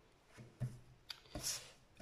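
Faint handling sounds: a few soft knocks of hands and a stamp on a cutting mat, and a brief papery swish about one and a half seconds in as a sheet of paper is slid and lifted.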